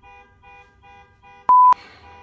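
A short, loud censor-style bleep: one pure tone lasting about a quarter second, cutting in and out sharply about one and a half seconds in. Beneath it run faint, evenly repeating electronic tones.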